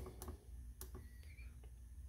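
A few faint sharp clicks from a rotary encoder knob on a motion-controller panel being turned to step through the menu, over a low steady hum.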